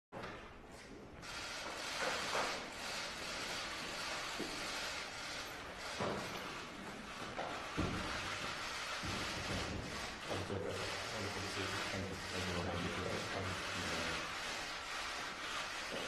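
Noise of a large room with low murmuring voices and a few scattered thuds, among them footsteps on a wooden floor about halfway through as two people walk in.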